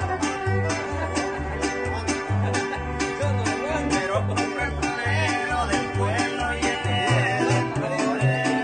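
A string conjunto playing a lively tune: two violins carry the melody over strummed guitars and a banjo-like instrument. A large bass guitar plays an alternating bass line at about two notes a second.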